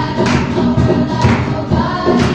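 A group of teenage girls singing together, with a sharp clap-like beat about once a second.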